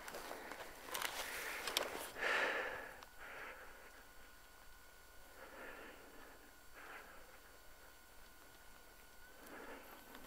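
Faint breathing close to the microphone, a breath every second or two, after a hard effort. Clicks and rustle from handling the camera come in the first couple of seconds.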